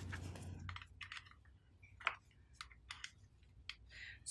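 Small metal type sorts and spacers clicking as they are set one by one into a steel composing stick: a dozen or so light, irregular clicks, after a brief soft rustle at the start.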